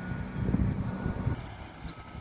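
Low rumble of distant earthmoving machinery, with some wind on the microphone. The rumble is strongest in the first second and a half, then fades.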